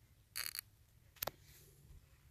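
Handling noise: a brief rattle of quick clicks, then a single sharp click about a second later, over a faint low hum.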